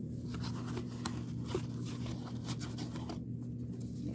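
1983 Topps baseball cards being flipped through by hand in their cardboard vending box: a run of quick papery ticks and scrapes as the cards are thumbed. A steady low hum runs underneath.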